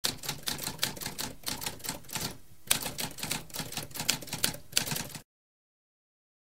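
Typewriter keys striking in a quick, even run of several keystrokes a second, with a brief pause about halfway through. The typing stops a little after five seconds in.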